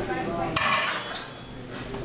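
Metal weight plates rattling and clinking on a loaded trap bar as it is lifted and lowered in a deadlift, loudest about half a second in.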